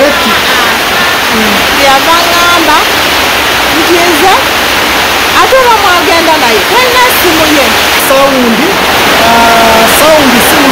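A person talking over a loud, steady rushing hiss that runs under the whole stretch.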